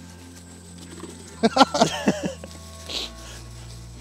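A man laughing in a few short bursts a little over a second in, over background music with low held bass notes.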